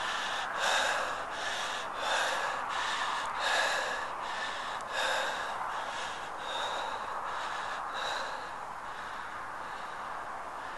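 A man breathing hard in short, gasping breaths, about one a second, growing weaker near the end.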